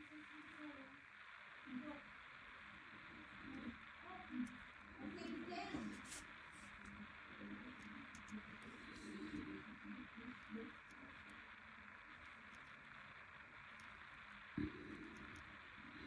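Near silence: faint, muffled voices from a television in the background over a steady hiss, with a soft knock near the end.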